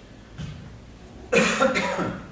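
A man coughing: two harsh coughs in quick succession near the end, after a faint short one about half a second in.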